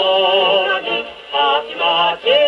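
A 1942 78 rpm record playing on a Columbia G-241 portable wind-up gramophone: a singer with vibrato and orchestral accompaniment. It is heard through the acoustic soundbox with a thin, narrow tone that has no bass and little treble.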